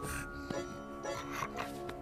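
Background music with held notes, under a cartoon dog snoring in its sleep.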